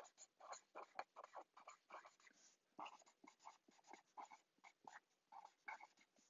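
Faint handwriting on paper: quick, short scratchy strokes several a second as words are written, stopping near the end.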